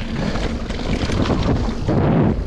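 Wind buffeting the action-camera microphone over a mountain bike rolling fast down a dirt trail: tyre noise on the ground with frequent small knocks and rattles from the bike.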